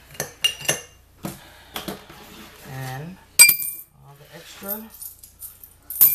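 Coins clinking against each other and a glass: a few light clicks in the first second, then a sharp metallic clink with a brief ring about three and a half seconds in, and another clink at the very end.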